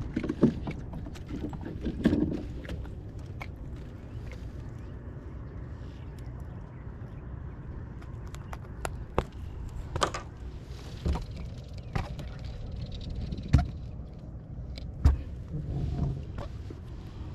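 Scattered knocks and thumps on a plastic kayak's hull as a freshly caught mangrove snapper and fishing gear are handled aboard, a few seconds apart, over a steady low rumble.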